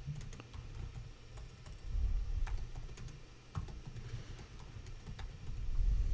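Typing on a computer keyboard: irregular, separate key clicks as a command is typed, over a low rumble.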